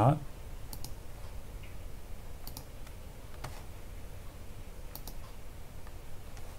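Computer mouse clicks, a few of them, mostly in quick pairs, over faint steady background noise.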